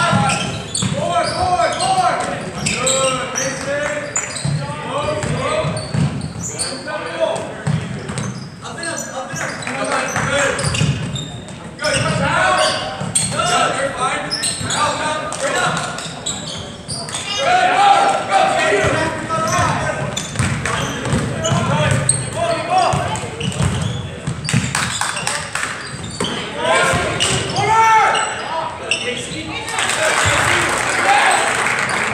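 Basketball game in a gymnasium: a ball bouncing on the hardwood court among players' and spectators' shouting and talk, echoing in the large hall.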